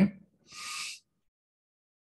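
A man's short breath drawn in, about half a second long, just after the tail of a spoken "OK?".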